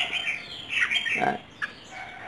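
Red-whiskered bulbul giving short, harsh calls in two quick clusters in the first second.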